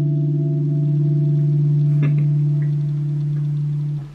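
A chord on a Telecaster-style electric guitar, held and ringing out steadily and fading a little toward the end, with a faint click about halfway through.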